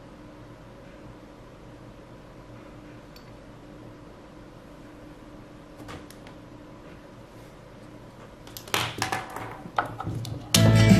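Low steady background hum with a light tap about six seconds in. Near the end comes a cluster of clicks and rustling: a headphone plug and its cable being handled and pulled from the speaker system's control pod.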